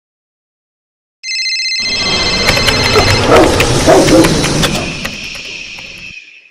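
After about a second of silence, a loud jumble of everyday noise starts suddenly: a high electronic ringing tone over a dense clatter and rumble, all fading away near the end.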